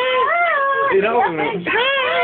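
A toddler's high-pitched sing-song vocalizing in long, wavering notes that slide up and down, with a lower voice joining briefly in the middle.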